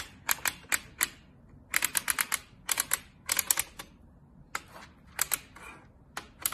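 Magnetic drawing pen pulling small metal beads up into the holes of a plastic magnetic bead board, each bead snapping into place with a sharp click. The clicks come in quick runs of several, with a short pause about four seconds in.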